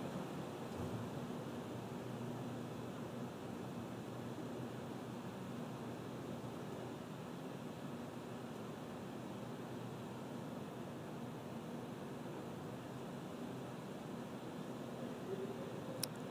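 Steady faint hiss with a faint low hum underneath: the background noise of a live broadcast audio feed, with no distinct event.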